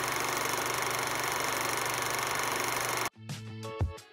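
A steady hissing noise with a fast, even flutter, used as a transition sound effect, cutting off suddenly about three seconds in. Light plucked background music comes in near the end.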